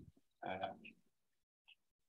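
A person's drawn-out, hesitant "um" over a video call; the rest is near silence.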